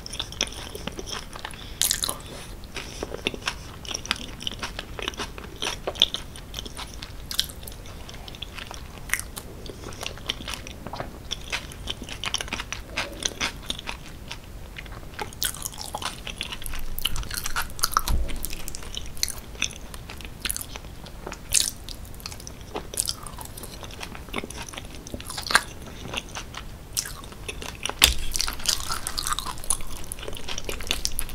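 Close-miked chewing and biting of cheese-sauce-covered fries, a dense run of small clicks from the mouth. Near the end a fork digs into the fries in the dish.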